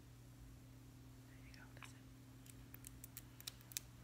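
Near silence: steady low room hum, with a faint murmured voice about a second and a half in, then a quick run of small light clicks through the last second and a half.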